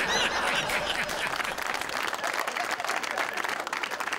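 Studio audience applauding: many hands clapping at once, with a few voices mixed in.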